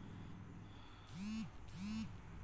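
A man's voice making two short murmured syllables, one about a second in and one near the end, each rising and falling in pitch. A low steady hum runs underneath.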